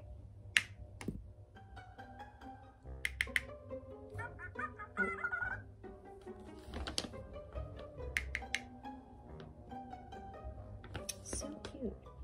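Magic Mixies toy in enchantment mode playing short electronic musical notes mixed with voice-like chattering and mumbling, with a few sharp handling clicks.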